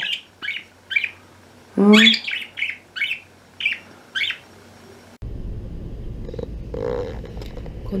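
A budgerigar (budgie) chirping, a run of short high chirps about twice a second. About five seconds in, the chirps stop and a steady low outdoor rumble takes over.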